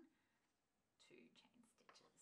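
Near silence, with soft, faint speech starting about a second in.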